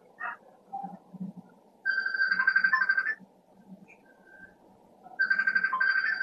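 Mobile phone ringtone: a trilling electronic tone sounding twice, each ring about a second long, the second starting about five seconds in.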